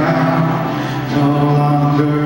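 Live worship band playing a slow song in long held notes, the chord changing about a second in.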